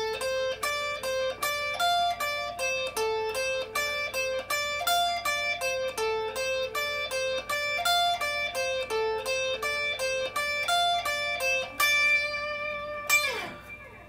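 Electric guitar, a Stratocaster-style solid body, playing a repeating D blues scale phrase of single picked notes at the 10th and 13th frets of the top two strings (A, C, D and F). Near the end it lands on a held note that rings out and fades.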